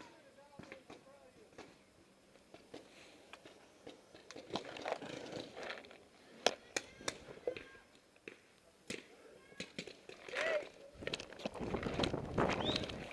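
Scattered sharp pops of paintball markers firing, several in quick succession in the middle, with faint distant shouting. A louder rustling noise comes near the end.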